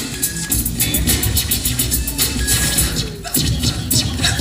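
Hip-hop break music with a steady beat and turntable scratching, played by a DJ through speakers. The beat thins out briefly a little after three seconds.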